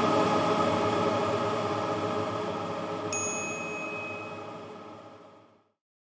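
The closing chord of an intro jingle dying away over about five seconds, with a single bright ding about three seconds in.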